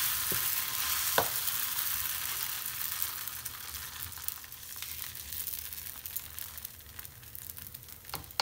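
Dosa batter sizzling on a hot tawa as it is spread thin in circles with a plastic ladle, with a sharp tap about a second in. The sizzle fades steadily as the batter spreads out and sets.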